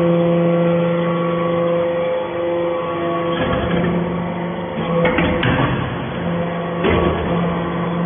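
Hydraulic metal-chip briquetting press running: a steady mechanical hum from its pump and motor that drops out briefly a few times, with knocks about five and seven seconds in.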